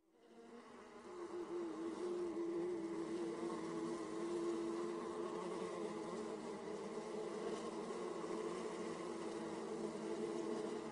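Bee buzzing, a steady low drone that fades in over the first second or two and then holds.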